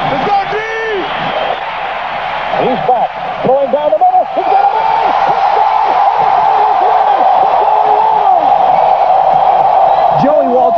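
Football stadium crowd cheering as the winning touchdown is scored. The cheering swells about three and a half seconds in, with excited voices shouting over it.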